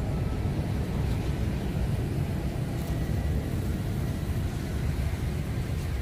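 Steady low rumble of outdoor background noise, with no voice or music over it.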